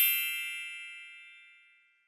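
A bright metallic ding, a bell-like chime sound effect, ringing out and fading away over about a second and a half.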